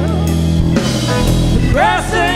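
A live rock band playing an instrumental passage between sung lines: electric guitars, bass, drum kit and keyboards.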